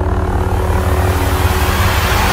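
A lit lightsaber humming: a steady low buzz under a loud rushing noise.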